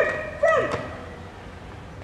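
A child's excited high-pitched calls: a short one at the start and another about half a second in that slides down in pitch. After that only quiet background hum remains.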